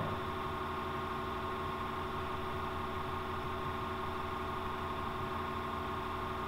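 Steady electrical hum with a faint hiss, the background noise of the recording setup; no other sound.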